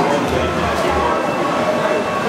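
Indistinct voices in a busy indoor hall, over background music with a low, regular beat.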